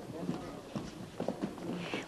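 Faint murmur of children's voices with shuffling feet in a classroom, quieter than the nearby dialogue.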